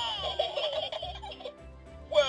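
Hey Duggee Smart Tablet toy's speaker playing a recorded giggle, which fades out after about a second and a half.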